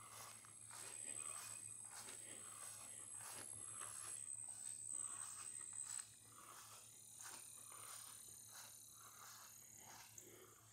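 Soft footsteps on grass, about two steps a second, faint, with a thin steady high whine in the background that stops about six seconds in.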